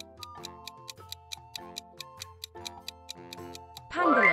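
Countdown-timer clock sound effect ticking quickly and evenly over soft background music.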